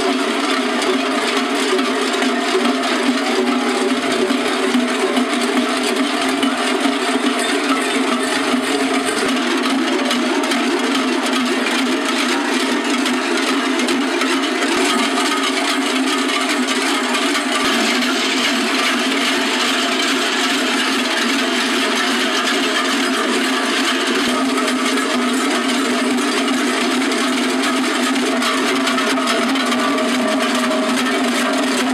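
Many large cowbells worn by sheepskin-clad carnival dancers ringing together in a dense, unbroken clanging din as the wearers move.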